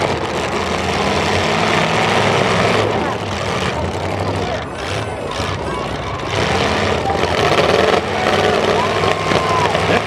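Several demolition derby cars' engines running together in the arena, loud and steady, with the noise of a crowd behind.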